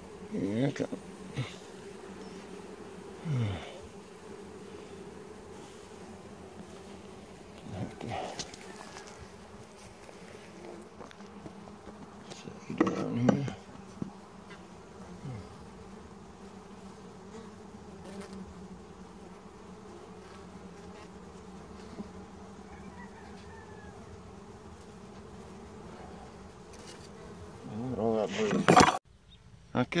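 Honey bee colony humming steadily in an opened brood box, with a few louder buzzes close by that fall in pitch. Occasional bumps and scrapes of a metal hive tool on the wooden frames, loudest just before the end.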